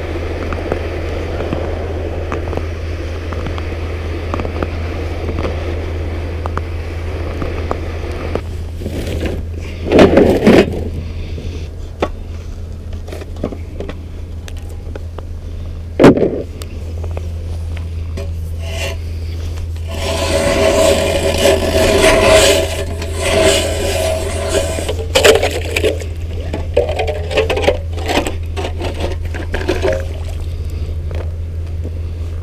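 Scraping over thin ice, with two sharp knocks on the ice, one about ten seconds in and one about sixteen. From about twenty seconds in, an electric ice auger drills through the ice with a steady whine for a few seconds, followed by shorter bursts.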